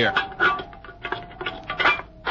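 Radio-drama sound effects of a metal tobacco tin being handled and tucked under a stone: a run of small clinks and knocks.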